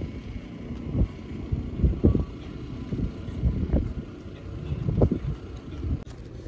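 Wind buffeting the camera microphone in irregular low rumbling gusts, the strongest about one, two and five seconds in.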